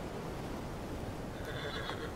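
A horse whinnies briefly near the end, over a steady low background rumble.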